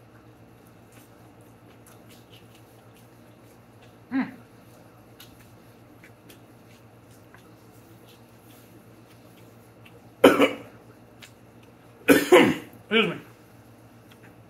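A man coughing and clearing his throat between mouthfuls of food. There is one short vocal sound about four seconds in, then a loud cough about ten seconds in and a few more coughs or throat-clears near the end. The rest is only faint eating noise.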